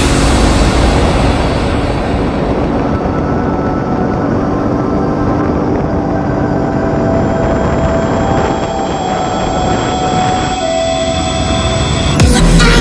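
Kawasaki KFX 700 ATV's V-twin engine running at road speed under heavy wind rumble on a helmet-mounted camera's microphone.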